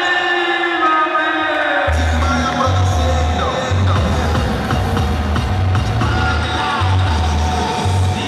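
Music with a heavy bass beat that comes in about two seconds in, over crowd noise in a gym.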